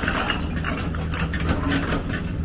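Construction machinery engine running with a steady low drone, under a quick series of sharp clattering knocks from bricks being scooped up while the sidewalk is torn up and rebuilt.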